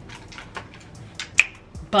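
Scattered light, sharp clicks and taps from hands handling the hair, clip-in piece and styling tools, the sharpest about one and a half seconds in.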